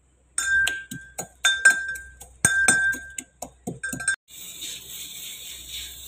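Steel pestle pounding whole dry spices in a stainless steel mortar: about fifteen quick, uneven strikes, each with a bright metallic ring. The pounding stops about four seconds in, and a steady hiss follows.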